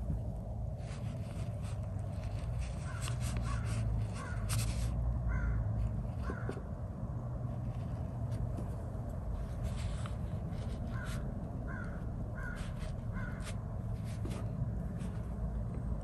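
A bird calling repeatedly in short, irregular calls, in two runs, over a steady low room hum.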